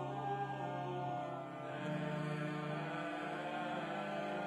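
Pipe organ and voices singing a hymn in long held chords. The bass moves to a new chord about two seconds in. This is the entrance hymn of a Catholic Mass.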